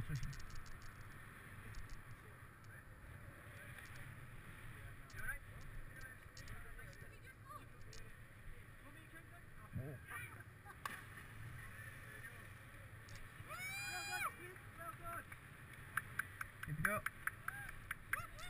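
Low steady wind rumble over open water, broken about ten to eleven seconds in by a faint sharp splash as a person jumping from a high bridge hits the water feet-first. A high call rises and falls about three seconds later, and people call out near the end.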